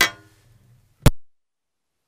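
Handling clicks, then a loud pop as a Rode lavalier microphone's plug is pulled from the GoPro's mic input, cutting the audio off to dead silence.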